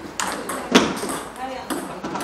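Two sharp clicks of a table tennis ball striking a hard surface, about half a second apart, the second louder.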